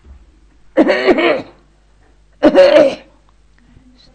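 An elderly woman clearing her throat twice: two short, rough bursts about a second and a half apart.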